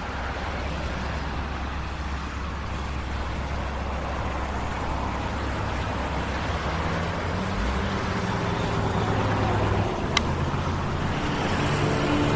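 City street traffic noise: a steady low rumble under a broad hiss, with a single sharp click about ten seconds in.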